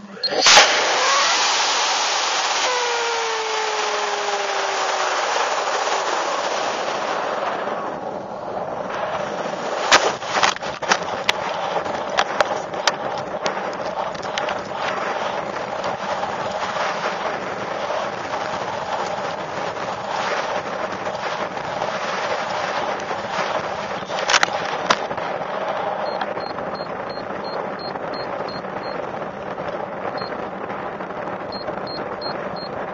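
Aerotech H220 Blue Thunder rocket motor igniting with a sharp blast just after the start, heard from a camcorder riding inside the rocket, followed by loud steady wind rush over the airframe with a falling whistle during the climb. About ten seconds in a sharp bang and rattle marks the ejection charge firing to deploy the drogue chute. Wind noise and scattered clicks continue during the descent, with another sharp burst near 24 seconds as the homemade device releases the main chute.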